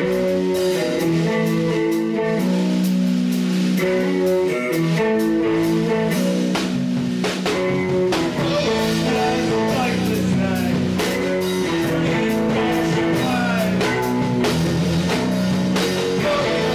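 A live rock band plays loudly: an amplified electric guitar holds sustained chords while a drum kit keeps a driving beat with frequent cymbal crashes.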